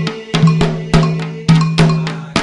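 Candomblé percussion: atabaque hand drums and a metal bell (agogô) struck in a steady, quick rhythm, the drum strokes leaving a ringing low tone.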